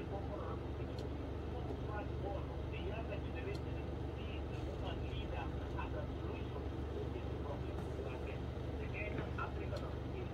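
Steady low background hum with faint, indistinct speech in it.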